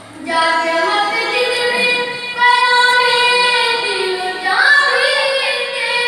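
A boy singing a noha (Shia lament) solo into a microphone, reading the verses from a sheet: long, held, drawn-out notes, with a step to a new note about two and a half seconds in and a rise in pitch about four and a half seconds in.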